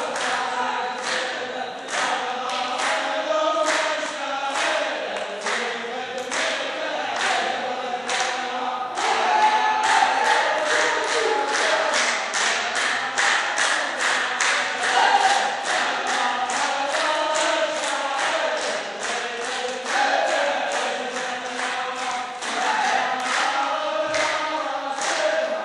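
A line of men sing a verse together in unison, keeping time with loud hand claps. The claps come about twice a second at first and quicken to about three a second around nine seconds in.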